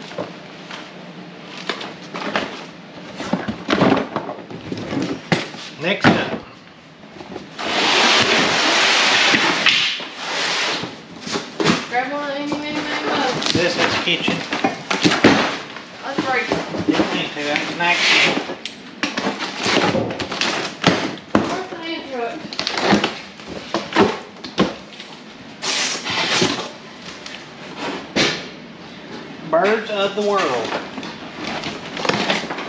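Cardboard boxes and their contents being rummaged and shifted by hand: scattered knocks, thuds and rustles, with a longer scraping rush of cardboard about eight seconds in.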